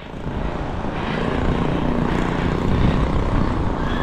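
Wind buffeting the microphone and street traffic noise while riding a bicycle at speed, swelling over the first second and then holding steady, with a faint engine-like drone in the mix.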